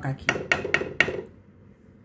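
A utensil knocking against a cooking pot: about four sharp clinks about a quarter second apart.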